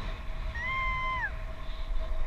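A single high-pitched squeal from a passenger in flight, held for under a second and dropping in pitch as it ends, over a low rumble of wind on the camera microphone.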